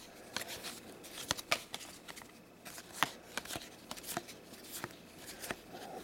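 Cardboard basketball trading cards being flicked and slid one at a time off a hand-held stack, making a string of light, irregular clicks and brushing sounds a few times a second.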